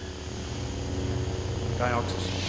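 Ignited lightsabers giving their steady low electric hum under a hiss of escaping gas. The hum grows slowly louder, and near the end a short rising, voice-like sound comes in.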